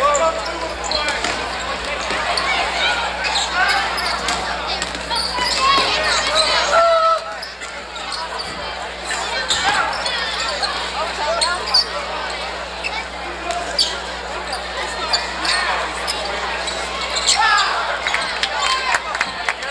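Basketball game sound in a gym: a ball dribbled on the hardwood court and short sharp impacts and squeaks from play, under shouting voices and crowd noise throughout. A steady low hum runs underneath.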